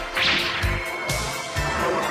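Anime sword-slash sound effect: a sharp swish right at the start that fades over about half a second, then another swish about a second in, over background music.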